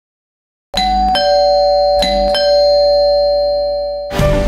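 Electronic doorbell chime ringing a two-note ding-dong, high then low, starting under a second in. It is rung a second time about a second later, and the notes ring on.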